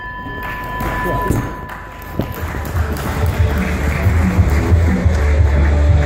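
A bell's ring holding for the first two seconds, then loud music with heavy bass from about two and a half seconds in, over voices in the hall.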